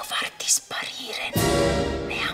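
Film trailer soundtrack: a woman's voice speaking in Italian over music. About one and a half seconds in, a sudden deep hit comes in and stays loud.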